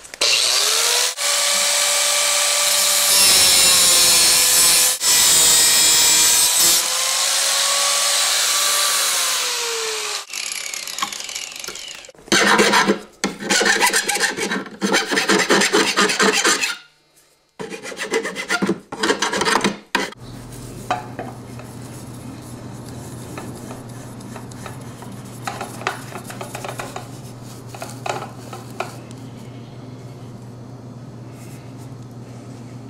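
A power tool cuts a galvanized steel stud bracket for about ten seconds, its whine dipping and rising as it bites. A few seconds later the metal is worked by hand in quick back-and-forth file strokes, stopping twice, and is followed by a low steady hum.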